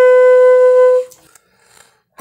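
Saxophone holding one long steady note, which fades out about halfway through, followed by a pause with only faint sound.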